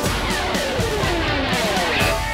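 Live rock band playing an instrumental break: a line of notes glides steadily down in pitch over about two seconds, over a steady drum beat.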